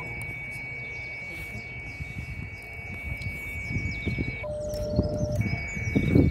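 Icom IC-705 transceiver sounding a steady high whistle from its speaker, over wind rumble on the microphone and faint bird chirps. About four and a half seconds in, the whistle drops out and a lower steady beep sounds for about a second as the radio keys into transmit.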